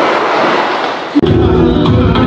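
A rushing noise, then a little over a second in it cuts off suddenly into loud party music with heavy bass.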